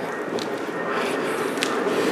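Steady city street background noise, with a couple of faint clicks.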